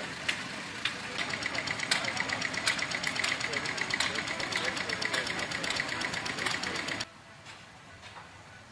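An old engine running with a fast, even knocking beat. It stops abruptly about seven seconds in, leaving only quieter background sound.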